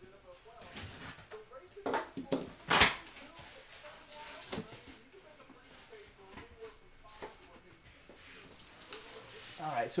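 Cardboard case being handled and opened: rustling, scraping and a few sharp knocks, the loudest about three seconds in.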